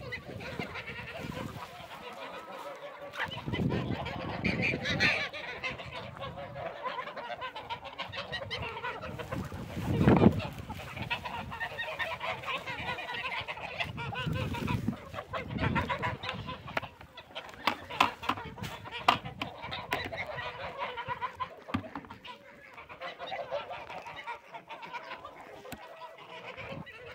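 Mixed flock of hens and ducks calling continually while feeding on fresh greens: clucks and honking calls overlapping, with many short pecking clicks. A few low rumbling bursts come through, the loudest about ten seconds in.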